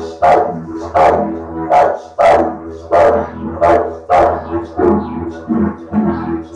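Didgeridoo played in a steady low drone, pulsed in a regular rhythm of loud accents about every two-thirds of a second, each accent bringing out bright overtones.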